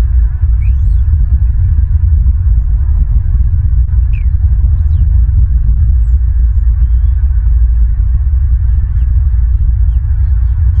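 Loud, steady low rumble of wind buffeting an outdoor nest-cam microphone, with a few faint, brief high bird chirps over it.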